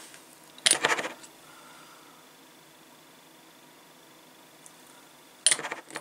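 Small hard objects clinking and clattering on a workbench: two short bursts, about a second in and again near the end.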